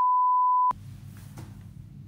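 One steady high electronic beep, a single pure tone lasting about three quarters of a second and cutting off suddenly, followed by faint room noise.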